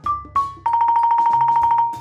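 Toy xylophone struck with mallets: two notes, each a step lower than the one before, then a fast, even roll on one bar lasting about a second.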